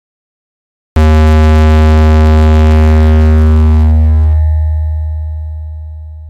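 A single deep synthesized note starts suddenly about a second in after silence and rings on, slowly fading. Its bright upper buzz cuts out about three and a half seconds later, leaving a low hum that keeps dying away.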